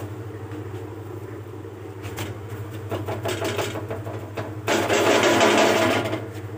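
Roti cooking on an iron tawa over a gas stove: a steady low hum, with a loud rushing hiss lasting about a second near the end.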